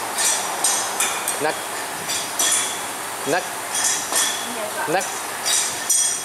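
Torque wrench clicking as the wheel nuts are tightened to 125 Nm, a sharp metallic click each time a nut reaches the set torque, several times in a row.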